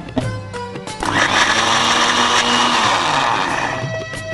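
Electric mixer grinder running, grinding a wet spice paste with a little water added. It starts suddenly about a second in, runs for about three seconds, and winds down near the end.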